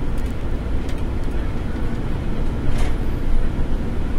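Steady low rumble of a bus's engine and tyres as it drives, heard from inside the bus.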